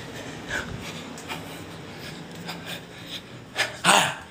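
A man breathing hard during exercise: quiet panting breaths, then two loud, sharp exhaled breaths near the end, the last a forced "ha".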